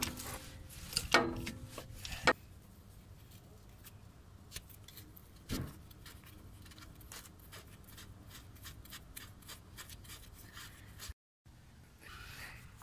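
Half-inch-drive ratchet and short extension clinking against the transfer case of a P38 Range Rover after a plug has been cracked loose: four sharp metal clanks with a short ring in the first couple of seconds, then a softer knock and faint scattered ticks of hands working the plug.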